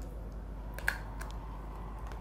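A few small plastic clicks, the sharpest about a second in, as a small plastic sauce cup and its clear lid are handled while the crumb topping is shaken onto fried chicken, over a low steady room hum.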